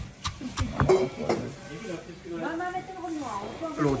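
A few sharp knocks of a stone pestle striking a stone mortar in roughly the first second, pounding spices for a cari, followed by soft talking.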